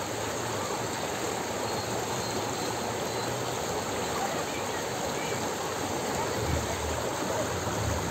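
A broad, fast-flowing river rushing, a steady wash of running water.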